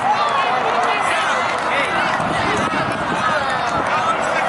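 Overlapping, indistinct shouts and calls of young players and sideline spectators at a youth football match, over a steady outdoor background.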